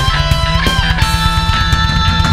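Heavy metal music: electric guitars playing held lead notes over a fast, driving low rhythm.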